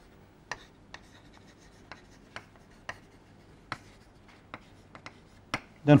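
Chalk writing on a chalkboard: a run of short, irregular taps and scratches, roughly ten in all, as letters are written.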